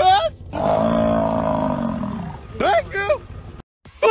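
A corgi howling with its head out of a car window: one long, low call of about two seconds that falls in pitch as it ends. It is framed by brief talking.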